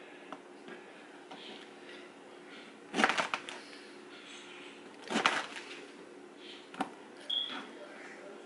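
Kitchen knife chopping through fresh pineapple onto a plastic cutting board: two bursts of quick knocks about three and five seconds in, then a single sharp click, over a steady low hum.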